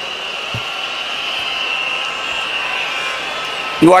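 A large crowd cheering and applauding in a stadium, heard as one steady wash of noise that holds level throughout.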